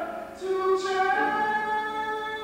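Voices singing unaccompanied, holding long notes that move to a new pitch about a second in, with the hiss of an 's' consonant just before the change.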